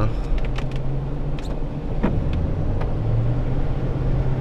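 Ford Crown Victoria Police Interceptor's V8 engine and road noise heard from inside the cabin: a steady low drone that dips slightly in pitch midway and comes back up, with a few faint ticks.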